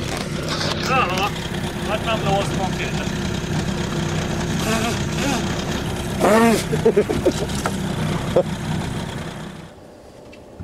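Small boat's outboard motor running at a steady low speed, with short bits of voice over it. The engine sound drops away sharply just before the end.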